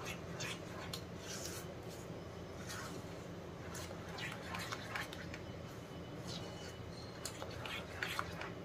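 Silicone spatula stirring a thick gram-flour and sugar-syrup mixture in a non-stick kadhai: faint, repeated soft scrapes and swishes, roughly one a second, over a low steady hum.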